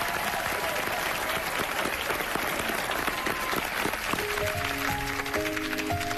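Studio audience applauding. About four seconds in, a grand piano starts the song's introduction, its notes entering one after another and building into held chords under the clapping.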